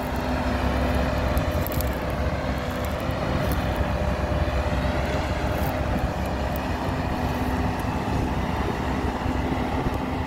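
Hidromek hydraulic excavator's diesel engine running steadily under working load, with a few short, sharp clinks in the first half.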